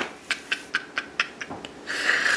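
A woman laughing softly under her breath: a run of short, breathy huffs, about four a second, then a longer outward breath near the end.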